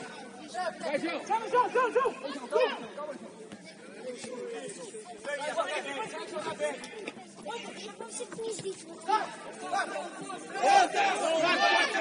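Several players' voices talking and calling out over one another on the pitch, getting louder near the end.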